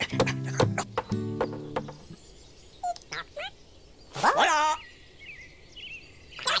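Cartoon soundtrack: quick knocking taps with pitched music notes for the first two seconds, then a few short chirps and, about four seconds in, a brief warbling call that rises and wavers.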